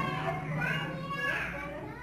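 Young children's voices talking indistinctly in a room, the words not clear.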